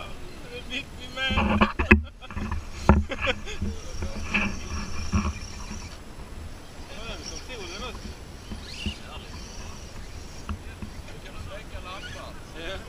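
Indistinct voices of onlookers over outdoor background noise, with a loud stretch of knocks and rumble about one to three seconds in.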